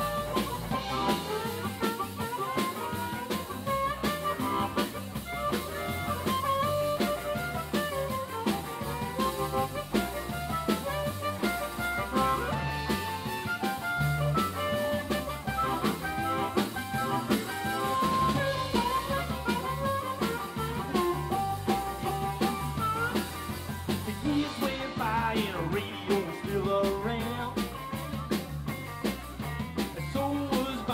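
Live blues band playing an instrumental break, with drum kit and electric guitar.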